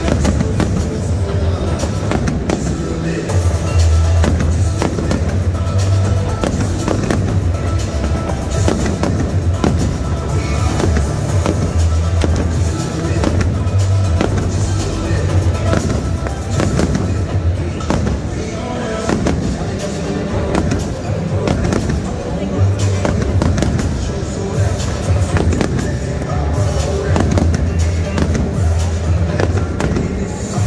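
Aerial fireworks going off in rapid, continuous bursts over loud music with a heavy bass line.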